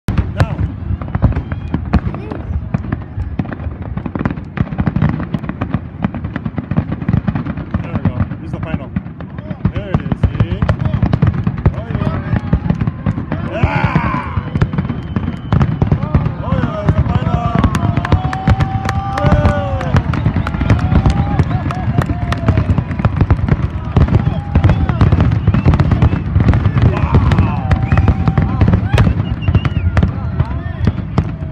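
Aerial fireworks display: a dense, continuous string of shell bursts, with sharp bangs overlapping on a heavy rumble.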